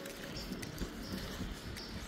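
Low outdoor background noise, with faint short high-pitched chirps recurring about every half second to a second.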